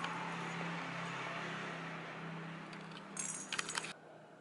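Hollow plastic cat-toy ball with a jingle bell inside, rattling and jingling in a short flurry of quick shakes in the last second, over a steady low hum.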